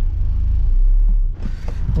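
Low, steady rumble of a car's engine and tyres heard from inside the cabin as it drives; it cuts off about a second and a half in, leaving a short burst of other noise.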